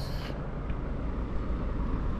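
A steady low background rumble with no clear pitch, with a brief hiss at the very start.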